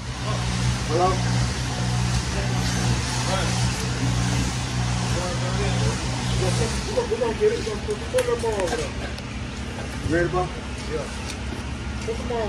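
A steady low engine hum from machinery on the job site, stronger for the first six and a half seconds and then quieter, with workers' voices calling out in the background.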